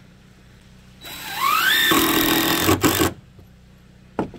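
DeWalt cordless impact driver driving a screw into wooden deck boards: the motor whines up in pitch for about a second, then the impact mechanism hammers for about a second and stops abruptly.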